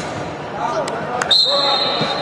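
A futsal ball being kicked on an indoor pitch, two sharp knocks, then a referee's whistle blown once as a steady high tone from about a second and a half in.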